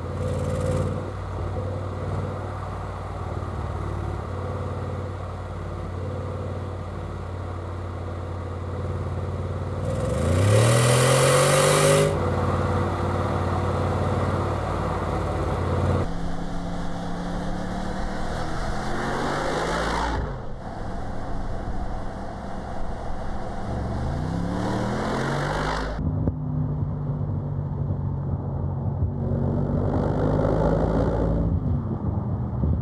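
Mercedes-AMG G 63's twin-turbo V8 running in a string of cut-together shots: a steady low drone, then the revs rising sharply about ten seconds in, and twice more in the second half as the SUV accelerates.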